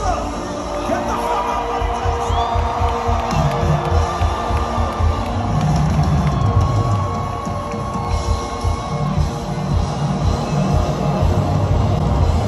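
A live band plays loudly through a big concert PA, heard from within the audience, with a steady pulsing beat and the crowd cheering over it.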